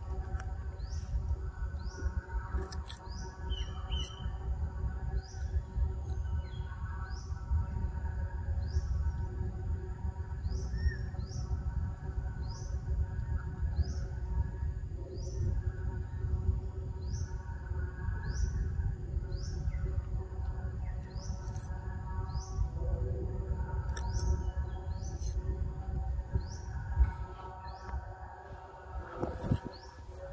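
A bird repeating a short, high, rising chirp about once a second, over a steady low rumble of outdoor background.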